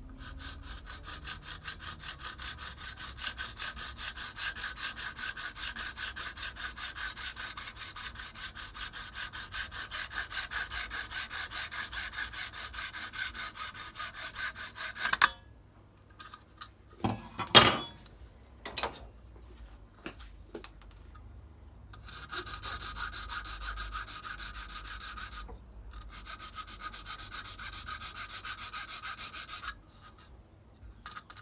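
Fast back-and-forth strokes of a hand file rasping the plastic case of a small relay voltage-controller module to trim off a tab. The filing runs for about fifteen seconds, stops for a few knocks, then goes on in two shorter runs.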